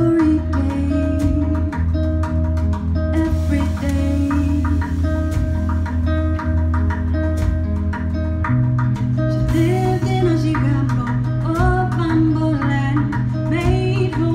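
Live acoustic duo music: acoustic guitar with drum-kit percussion over a sustained low bass note that steps up in pitch about eight and a half seconds in, with short wordless vocal phrases near the end.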